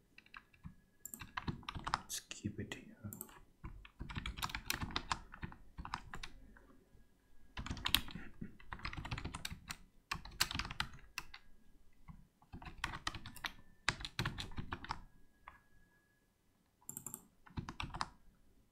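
Typing on a computer keyboard: bursts of quick keystrokes, each a second or so long, separated by short pauses.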